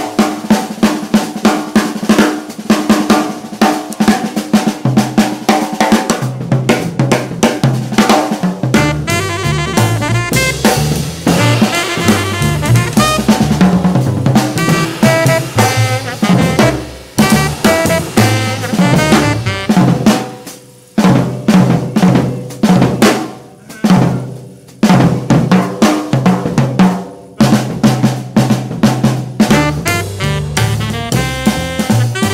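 A jazz drum solo on a drum kit: snare, bass drum and cymbals struck in quick, busy patterns, with a few short breaks in the playing in the second half.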